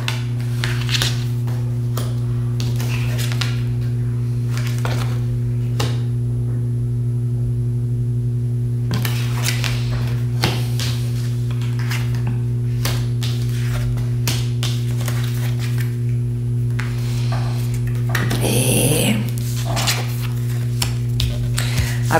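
Tarot cards being dealt and laid out on a table: scattered light taps and slides of the cards. Under them runs a steady low hum, the loudest sound throughout.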